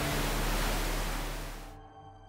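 A steady, broad background hiss with a low hum fades away over about a second and a half. Soft, sustained music tones take over near the end.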